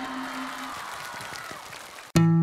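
Studio audience applause fading away, with faint background music under it.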